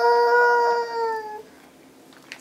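A toddler's voice in one long, steady, high-pitched vocal sound that dips slightly in pitch at the end and stops about a second and a half in.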